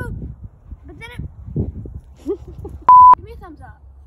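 A loud, steady single-pitch electronic bleep lasting about a quarter of a second cuts in about three seconds in, over a girl's talking. It is the kind of tone an editor lays over speech to censor it.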